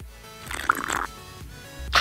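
A sip of iced latte from a plastic cup, a short wet slurp about half a second in, over background music. Near the end comes a louder noisy burst, a bite into a breakfast sandwich.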